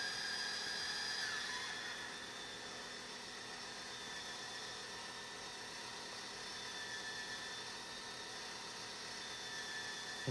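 Meade DS-114 telescope mount's electric drive motors slewing under go-to control: a high whine that drops in pitch and fades about a second and a half in, then carries on as a fainter steady whir.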